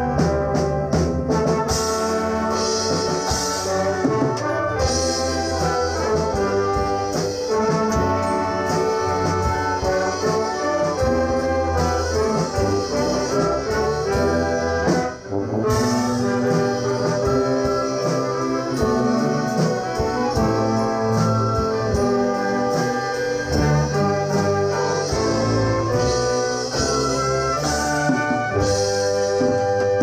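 Community orchestra of violins, woodwinds and brass playing a piece, with the brass prominent and a brief drop in the sound about halfway through.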